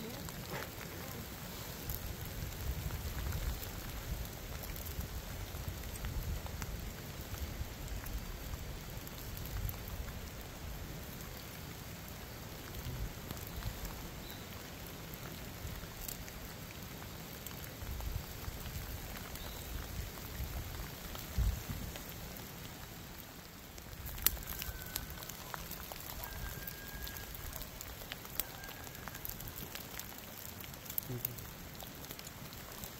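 Steady patter of light rain, with a small campfire crackling in scattered clicks and a low rumble underneath.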